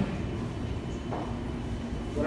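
Steady low rumble of a room's air-conditioning system.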